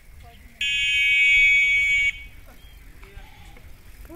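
A loud, steady buzzing tone that holds one pitch, starting about half a second in and cutting off suddenly after about a second and a half.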